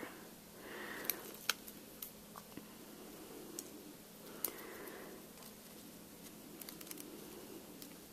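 Faint handling sounds of peeling release papers off foam adhesive dimensionals on a die-cut cardstock piece: scattered small ticks and soft paper rustles.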